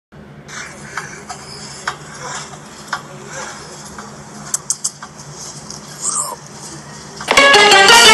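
A person bouncing on a trampoline, heard faintly over background noise as a few sharp clicks and knocks. About seven seconds in, a much louder cartoon clip of a voice with music cuts in.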